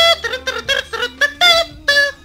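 A short jingle melody: a long held note ending, then a quick run of short, detached notes.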